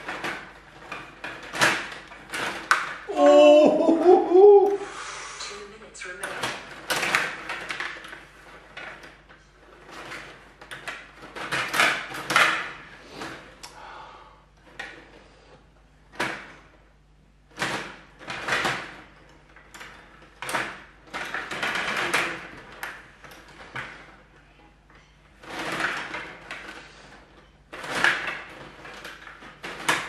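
Stiga table hockey game in play: sharp plastic clacks and rattles in irregular flurries as the rod-mounted players are spun and slid and the puck knocks against players and boards. A brief vocal exclamation about three seconds in.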